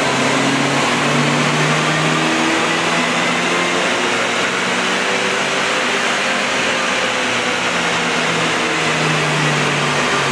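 A Subaru Legacy's engine running on a chassis dynamometer, mixed with a loud, steady rush from the rollers and a large cooling fan. The engine note holds fairly steady, wavering a little in pitch.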